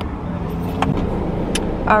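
Car cabin with the engine running as a steady low rumble, with a few light clicks and rustles as cardboard pizza boxes and a paper receipt are handled.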